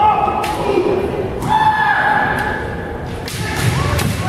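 Kendo fencers' kiai: two long held shouts, one at the start and one about a second and a half in. Several sharp knocks and thuds come in between, from bamboo shinai and stamping feet on the wooden floor.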